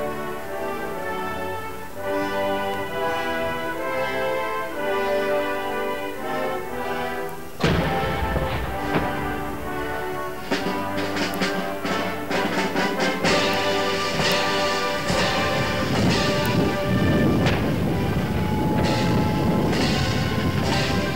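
Band music playing, with a single loud report from a saluting field gun firing a blank round about a third of the way in. After the report the music grows fuller, with a run of sharp drum or cymbal strikes over it.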